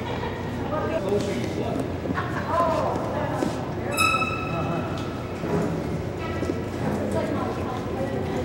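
Indistinct background voices of people talking in a large room, with scattered light knocks. About halfway through comes one brief, high-pitched tone.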